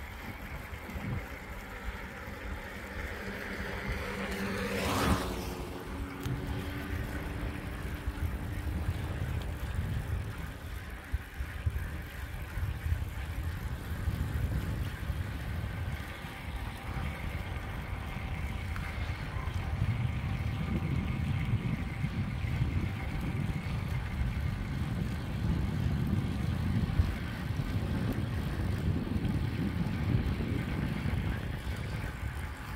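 Wind rumble on the microphone and tyre noise from riding a road bike. A motor vehicle passes about five seconds in, rising and then fading.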